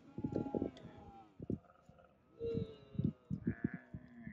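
Dromedary camels calling: a long bleating call that falls in pitch over the first second, then a shorter call about two and a half seconds in.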